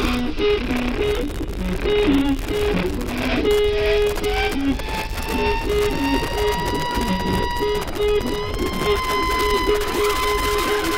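Large improvising jazz ensemble with electric guitar playing live: a repeating riff of short, clipped low notes, joined about halfway through by a long held high note that slowly bends upward.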